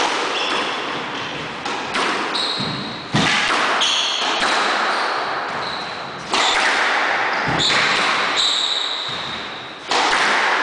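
A squash ball is struck by rackets and smacks off the court walls during a rally. Each hit is a sharp crack that rings out in the enclosed court, with the loudest about three seconds in, about six seconds in and right at the end, and lighter hits near two seconds. Short high squeaks come and go between the hits.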